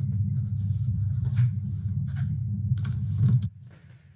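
Irregular clicks of typing on a computer keyboard over a steady low hum, which cuts off suddenly about three and a half seconds in.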